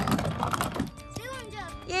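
Small wooden toy cars rolling down a plastic playground slide, a rattling clatter lasting about the first second, followed by a child's voice.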